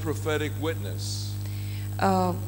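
Steady low electrical mains hum from the microphone and sound system, continuing through a pause in speech, with a short hiss about a second in.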